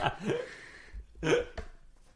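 A short laugh: a brief voiced sound near the start, then a quick breathy chuckle about a second and a half in.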